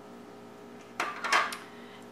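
A brief clatter of metal kitchen utensils about a second in, as a box grater is set down on the counter and a zester is picked up.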